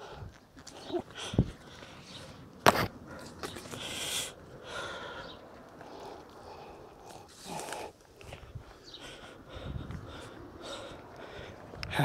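Rustling of grass and undergrowth with scattered knocks as a length of garden hose is dragged through the vegetation, with one sharp crack about a quarter of the way in.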